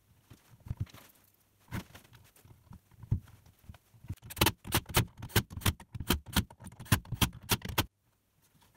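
Small metal wood screws clicking and tapping against a plastic bucket rim as they are set into pre-drilled holes. A few scattered clicks come first, then from about halfway a quick run of sharp clicks, roughly four a second.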